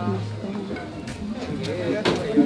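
Voices of a party crowd with a few scattered sounds from a live band between songs: a low bass note held briefly, twice, and a few light hits.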